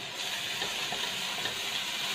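Blanched noodles sizzling in a hot wok while a silicone spatula stirs and tosses them: a steady hiss with a few faint light ticks.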